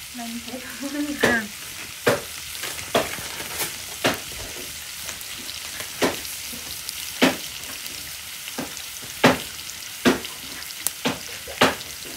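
Green vegetables sizzling as they stir-fry in a wok over a wood fire, a steady frying hiss broken by sharp pops every second or two.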